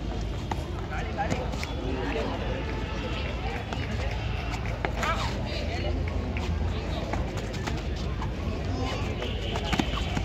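Indistinct voices of kabaddi players and onlookers, with short calls and chatter over a low steady rumble.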